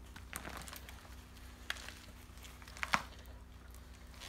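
Soil crumbling and roots tearing as a banana plant is pulled up out of the ground by hand. A few scattered crackles, the sharpest about three seconds in.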